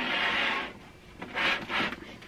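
Plastic case of an iMac G3 scraping across a desk as the computer is swivelled around, a longer rub and then a second, shorter one about a second and a half in.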